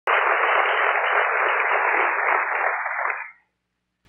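Audience applause, heard as a dense, even rush in a thin, narrow-band sound. It starts suddenly and fades away after about three seconds.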